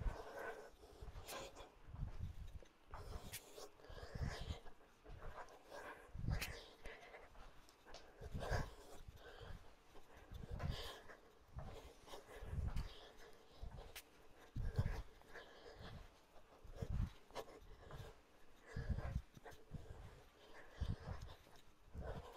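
Faint exertion sounds of a person throwing cross punches: a soft puff of breath and movement about every two seconds.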